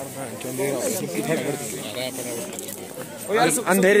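Young men talking casually, with one voice getting louder about three seconds in, over a faint steady hiss.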